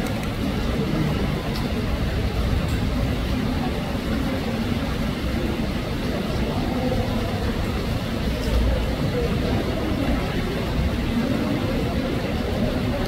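Steady murmur of many people talking at once, a crowd's chatter with no single voice standing out, and a few faint clicks.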